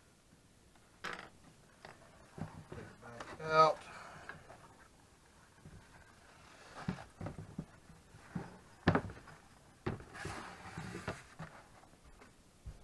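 A leather axe mask and its cord being handled and folded on a wooden workbench: scattered light knocks on the bench and rustling of the stiff leather, with a short pitched sound about three and a half seconds in.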